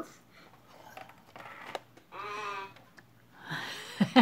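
A woman's short pitched vocal sound about two seconds in, then breathy laughter starting near the end, with a few faint clicks in between.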